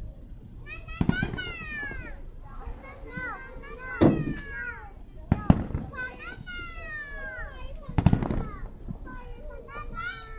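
Fireworks finale: sharp bangs of aerial shells bursting, four or five in all, the loudest about four and five and a half seconds in. Between and over them, children shriek and squeal in long falling-pitch cries.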